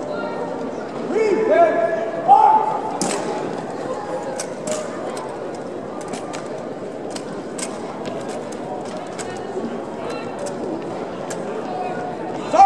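Two drawn-out shouted drill commands, then the rifles of an armed drill team are slapped and snapped through manual-of-arms movements in unison. This gives a scatter of sharp cracks over several seconds above a low murmur.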